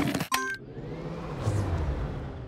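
Cartoon sound effect of an electric car failing to go: a weak, noisy whir with a low hum, swelling slightly midway, because the car's battery is flat.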